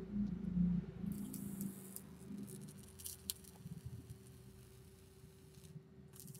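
Coil of a SteamBoy Storm Rider 2.3 rebuildable atomizer firing on freshly dripped e-liquid: a hiss with a few light crackles, starting about a second in and fading out just before the end, over a faint steady hum.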